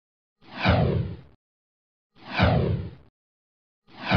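Three whoosh transition sound effects, about a second and three-quarters apart, each a short falling sweep.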